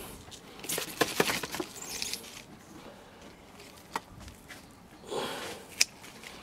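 Scissors cutting through a spent hyacinth flower stalk: a few sharp clicks of the blades, near the start, in the middle and just before the end, with soft rustling of the leaves.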